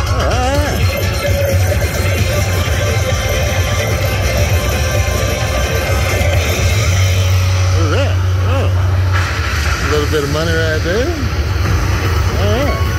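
Cashnado slot machine's bonus-round music and prize sounds as amounts are picked on its touch screen, over steady casino-floor din with background chatter.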